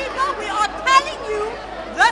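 Speech only: a woman talking, with chatter from the people around her.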